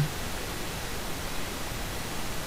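Steady hiss of recording background noise with no distinct sound events.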